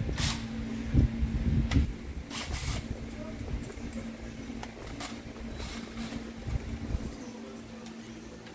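Workshop sounds: a few scattered knocks and clatters of handled metal over a steady low hum.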